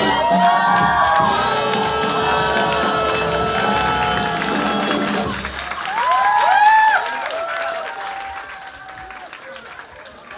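Swing dance music playing with crowd whoops over it, ending about halfway through; the crowd then cheers and shouts loudly and applauds, the sound fading away near the end.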